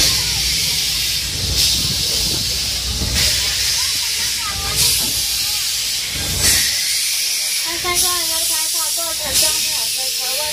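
Small steam locomotive hauling the train, hissing steam in long surges about every second and a half over the low rumble of the running train.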